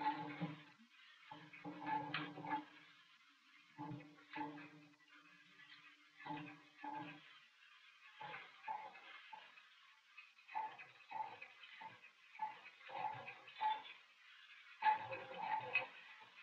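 The TARDIS flight and landing sound effect, faint: a steady hum for the first few seconds, then a run of short, irregular pulses as the ship comes in to land.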